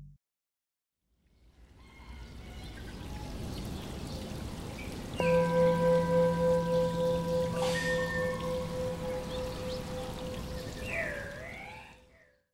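Outro sound: a soft water-like rushing fades in after a second of silence. About five seconds in, a single ringing tone starts and holds, pulsing slowly as it fades. A few short gliding calls sound near the end.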